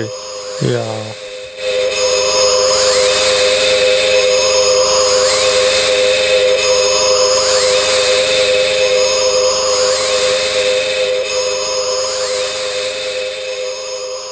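A loud, steady mechanical whirring noise like a power tool or vacuum cleaner starts about two seconds in, its pitch sweeping up and down about every three seconds. It cuts the conversation off abruptly.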